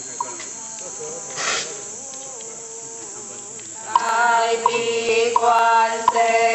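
Ritual chanting, quiet at first with a faint held tone and a short hiss about a second and a half in, then returning loudly with long held notes about four seconds in.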